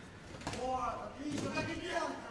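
Faint voices of men calling out in the background, with one short sharp knock about one and a half seconds in.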